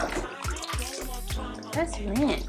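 Water splashing and pouring in a plastic infant bath tub as a baby's shampooed hair is rinsed. Background music with a singing voice plays over it.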